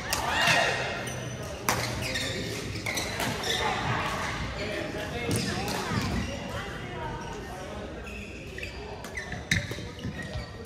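Badminton play in a large sports hall: a few sharp racket strikes on the shuttlecock, with voices in the background.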